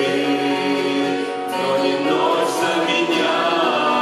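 Small vocal group of two women and two men singing a Russian worship song together into microphones, with long held notes.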